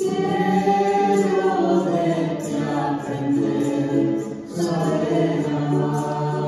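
A group of voices singing a hymn together in sustained phrases, with brief breaks between phrases about two and four and a half seconds in.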